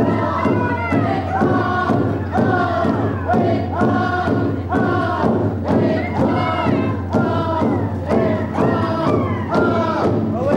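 A group of voices singing a Tlingit dance song in unison over a steady drumbeat of about two strokes a second.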